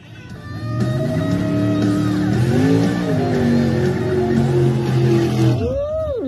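Mud-racing truck's engine held at high revs under full throttle as it runs the track, its pitch wavering briefly about halfway through; the sound cuts off suddenly near the end.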